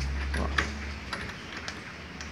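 A few light metallic clicks and taps from a locking pin being worked in a stainless-steel kayak stabilizer tube.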